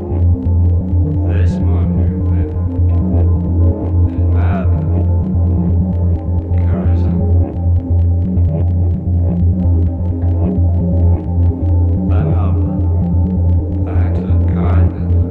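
Electronic music from a DJ mix: a deep, steady, throbbing bass drone under layered sustained synth tones, with a fast, faint ticking pulse and a brief swooping sound every few seconds.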